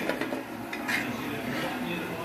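Light clinks of stainless-steel kitchenware as fried fritters are tipped from a utensil onto a steel plate, with a couple of short knocks, one at the start and one about a second in.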